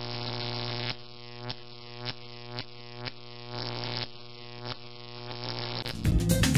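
A steady low electronic drone from the channel's intro, with soft swelling pulses about twice a second.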